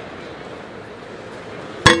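A basketball clanging once off the metal rim on a missed free throw, a sharp ringing strike near the end, over the steady noise of an arena crowd.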